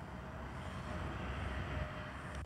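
Steady outdoor street ambience: a continuous low rumble of road traffic.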